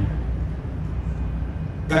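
Steady low background rumble in a pause between speech. A man's voice starts again near the end.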